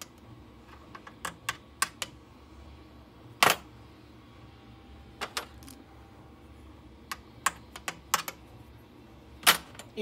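Metal keys being handled and set down on a shelf: about a dozen sharp, irregular clicks and clacks, the loudest two about three and a half seconds in and just before the end.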